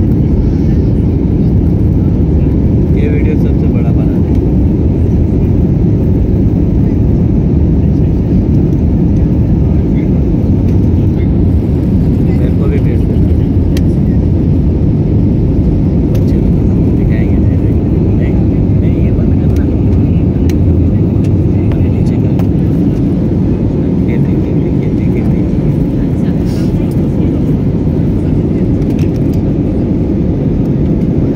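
Steady cabin noise inside an Airbus A320-family jet airliner in flight: an even, deep rush of engine and airflow noise.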